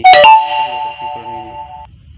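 A loud electronic chime: a sharp struck onset, then a few steady tones held for nearly two seconds before cutting off.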